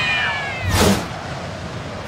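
A cartoon character's nonverbal, cat-like whining cry, gliding downward in pitch and fading out within the first half second, followed by a short swish with a low thump a little under a second in.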